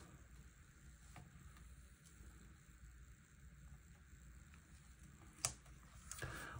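Near silence with faint handling of a paper sticker being pressed onto a planner page, and one sharp click shortly before the end.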